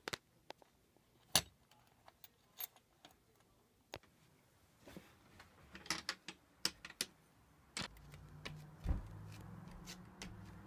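Scattered light clicks and clinks of metal hardware being handled: steel door hinges and brass wood screws. A low steady hum comes in near the end.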